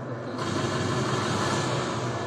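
Ambient sound of an indoor sports arena: a steady low hum under an even wash of distant crowd noise.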